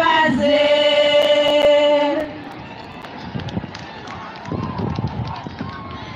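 A group of women singing together, holding one long note that ends about two seconds in. After that come the quieter murmur of a crowd and scattered voices.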